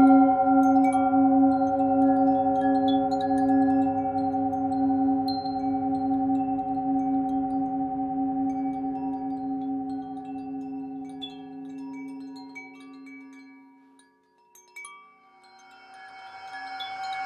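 A struck Tibetan singing bowl rings out, its deep tone wavering, and slowly dies away over about fourteen seconds. Light wind chime tinkles sound over it.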